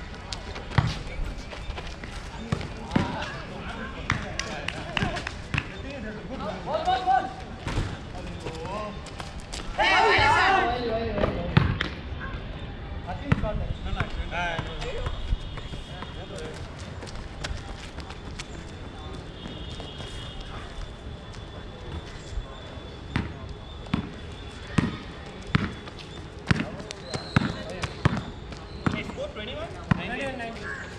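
A basketball bouncing on an outdoor concrete court, dribbled in short sharp bounces throughout, coming about once a second near the end, with players shouting in the background, loudest about ten seconds in.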